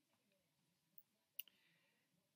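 Near silence: room tone, with one short faint click about one and a half seconds in.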